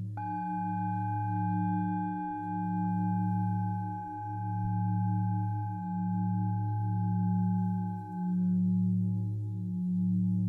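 Crystal and Tibetan singing bowls played together: deep sustained tones that waver in slow, even pulses. Just after the start, a bowl is struck and rings, its higher overtones fading away over about eight seconds.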